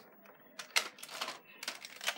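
Plastic Nerf toy blasters being handled: a few sharp clicks and knocks, the loudest just under a second in.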